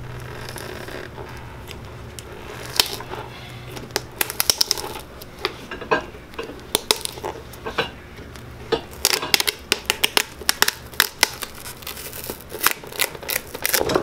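Steel pincers prying the old leather sole and heel off a pegged boot, giving irregular runs of sharp clicks, snaps and cracks as the leather splits and the pegs let go.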